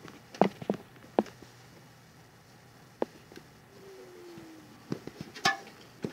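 A few sharp, scattered clicks and knocks of a hand-held camera being handled close to a computer case, over a faint steady background noise.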